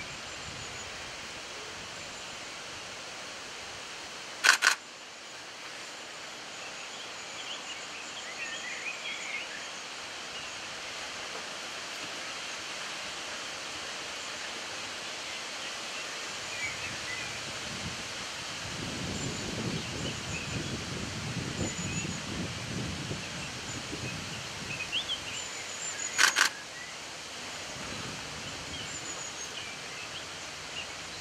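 Quiet waterside outdoor ambience with faint distant birdsong chirping now and then. A sharp loud click sounds about four seconds in and again near the end, and a low rough noise swells through the middle of the second half.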